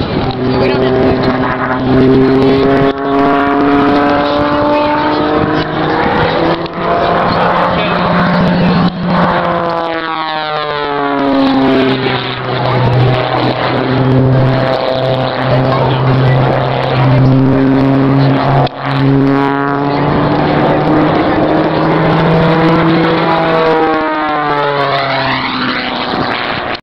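Aerobatic biplane's piston engine and propeller running hard through a routine, the pitch stepping and gliding with power changes through the manoeuvres. A sweeping, shifting tone comes twice, about ten seconds in and near the end, as the plane passes low.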